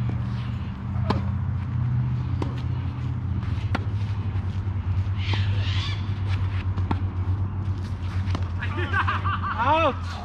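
Tennis balls struck by racket strings during a doubles rally: sharp hits a second or two apart over a steady low hum, with a player's voice calling out near the end.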